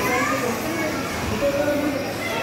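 Indistinct voices and children's chatter, with no clear sound from the toy motorbike.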